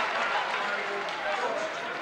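Outdoor ground ambience at a Gaelic football match: a steady wash of distant crowd voices and calls.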